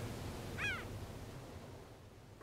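Gulls calling over a steady wash of surf: two short arched calls, one at the very start and one just over half a second in, before the sound fades out near the end.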